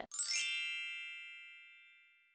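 A chime sound effect: a quick sparkly shimmer of high tones, then a ringing bell-like chord that slowly fades away.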